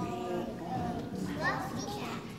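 A group of young children singing a song together in a chorus, the voices holding and sliding between notes.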